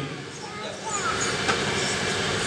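A pause in a man's amplified talk, leaving the steady hiss of room noise in a hall, with a few faint voices in the background.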